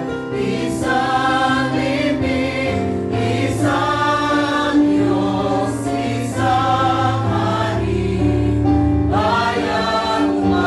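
Church choir singing the entrance hymn of a Catholic Mass, over an accompaniment that holds long low notes.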